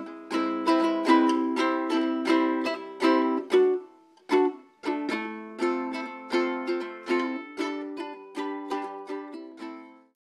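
Home-built tenor cigar box ukulele with a 1950s wooden cigar box body, strummed in a steady rhythm of chords, two or three strokes a second. The strumming breaks off briefly a little before the middle, resumes, and cuts off suddenly at the end.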